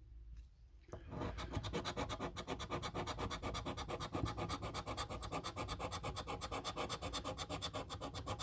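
Scratch-off latex coating on a paper lottery scratchcard being scraped away in rapid back-and-forth strokes, about ten a second, starting about a second in.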